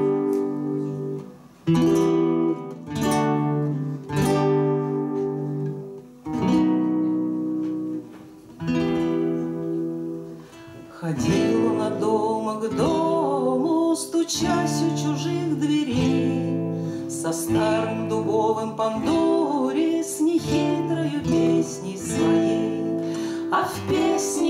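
Two acoustic guitars playing a song's instrumental introduction: spaced strummed chords, each left to ring, for about the first eleven seconds, then a busier, quicker picked pattern to the end.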